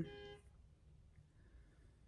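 Near silence: faint room tone, with the end of a woman's word trailing off in the first half second.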